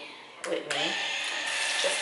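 Bathroom sink tap turned on under a second in, water then running steadily into the basin.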